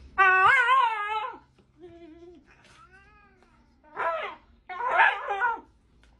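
A dog and a cat squabbling: one long, loud wavering cry, then several shorter cries that rise and fall in pitch.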